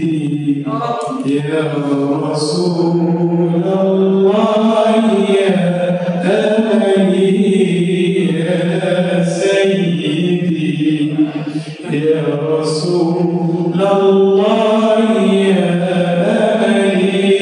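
A man chanting sholawat, an Islamic devotional song in praise of the Prophet, unaccompanied into a handheld microphone, with long held, wavering notes.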